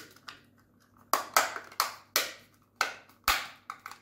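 Sharp plastic clicks and taps, about six in two and a half seconds, as a plastic mounting bracket is fitted onto the back of a SwitchBot solar panel and locks in place.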